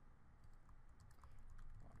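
Faint clicking of computer keyboard keys as a name is typed.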